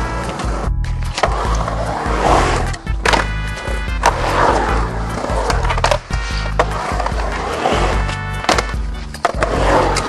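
Skateboard wheels rolling and carving on a concrete bowl, with sharp clacks and knocks of the board, under background music with a steady bass.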